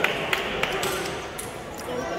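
Table tennis balls clicking sharply and irregularly against bats and tables in a busy hall, about six knocks in two seconds, over a background of voices.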